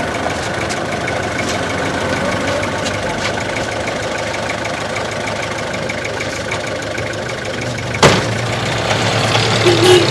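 Minibus engine idling steadily, with a single sharp thump about eight seconds in.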